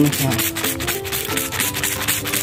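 A hand spray bottle squeezed over and over, each squeeze a short hissing spurt of liquid, over background music with held notes.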